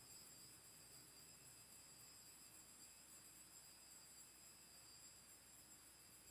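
Near silence: faint room tone with a faint steady high-pitched tone.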